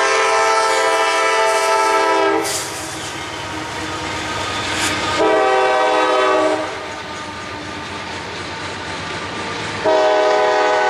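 A CSX diesel freight locomotive sounds its multi-note chord horn at a grade crossing. A long blast ends about two and a half seconds in, a shorter blast comes about five seconds in, and another starts right at the end. Between the blasts is the steady rumble and clatter of freight cars rolling past on the rails.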